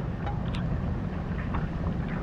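Steady low rumble and hiss of wind on the microphone in light rain, with one faint tick about a quarter of the way in.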